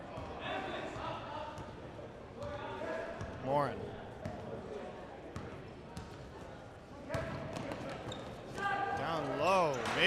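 Basketball bouncing on a gym floor as it is dribbled up court, with spectators' voices and shouts around it. Loud shouting voices rise near the end.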